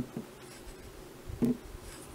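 Light scraping and brushing of a paintbrush on soft epoxy sculpting clay as it is pressed into the mane, with a few soft low knocks from handling, the loudest about a second and a half in.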